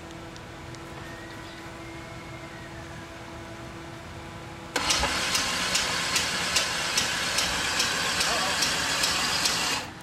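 V8 engine of a custom S10 pickup starting: a steady hum, then about five seconds in the engine catches and runs loud and rough, with an uneven lope of about two to three pulses a second.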